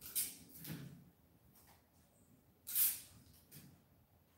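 Chinese brush sweeping across mulberry paper in quick strokes: two short swishes in the first second, a louder one near three seconds in, and fainter ones between.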